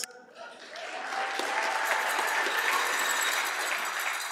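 Audience applauding, swelling in over the first second and then holding steady, with a few voices in the crowd.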